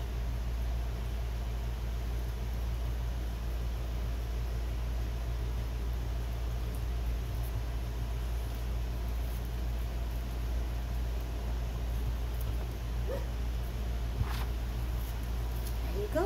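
Newborn puppies with their mother in a whelping crate: a faint, short puppy squeak about thirteen seconds in and a small click a second later, over a steady low hum.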